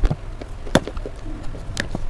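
Long fingernails tapping on a slab of slate: about three sharp clicks over a low rumble.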